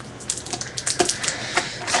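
Irregular light clicks, taps and rustles of items and their packaging being handled and set down on a table.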